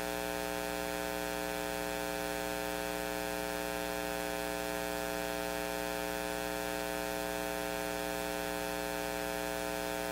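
Steady electrical mains hum, buzzy with many overtones, holding at one pitch and level throughout, over a faint hiss.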